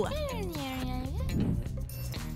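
Background music with a steady bass line. Over it comes one long voice-like call that slides down in pitch for about a second and then turns back up.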